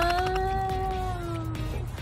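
A dog howling: one long drawn-out note that rises slightly, then sinks and stops shortly before the end.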